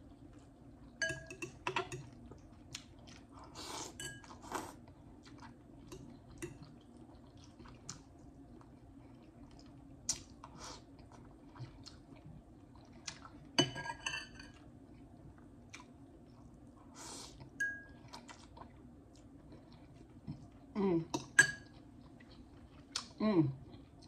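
Close-up eating sounds: instant ramen noodles chewed and slurped off a metal fork, with the fork now and then clinking against a glass bowl. There are scattered short clicks and smacks, and a couple of short hums near the end.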